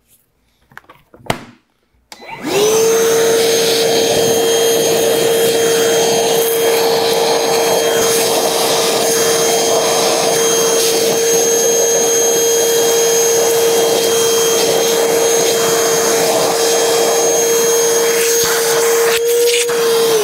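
Milwaukee M18 Gen 1 cordless wet/dry vacuum: after a few faint handling clicks, it is switched on about two seconds in and spins up to a steady motor whine with rushing air. Its crevice tool sucks debris out of holes drilled in a board, and it starts winding down right at the end.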